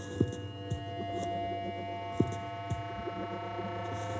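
Live-processed sound from a drawing-table installation: a steady electronic drone of held tones over a low hum, with a few short low thumps, the loudest about a quarter-second in and just after two seconds. The sound is made from the friction of pen strokes on the table, amplified and transformed.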